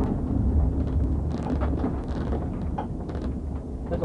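Steady low road and engine rumble of a moving police patrol car, with a few faint ticks around the middle.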